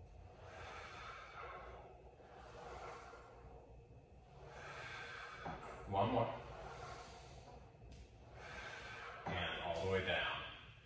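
A man breathing audibly through a set of dumbbell chest flies on a Pilates reformer, one hissing breath every couple of seconds. About six seconds in there is a louder exhale with voice in it, and another near the end.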